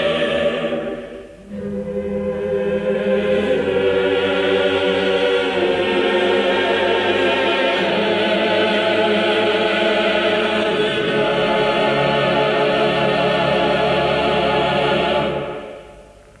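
Choir singing slow, sustained chords with vibrato. A brief break comes about a second in, then the chords hold on until they die away just before the end.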